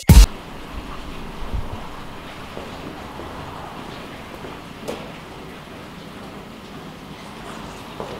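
A loud, short hit at the very start, then a steady rushing noise of brewhouse running, with a faint knock about five seconds in.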